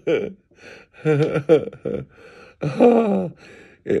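A man laughing in a few short bursts, with gasps of breath between them.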